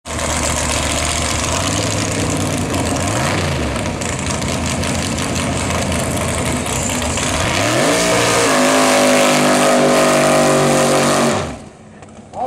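Car doing a burnout: the engine is held at high revs with the tyres spinning, the revs climb about eight seconds in and hold, then cut off suddenly near the end.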